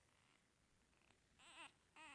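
A four-day-old puppy gives one brief, faint, wavering squeak-whimper about a second and a half in; otherwise near silence.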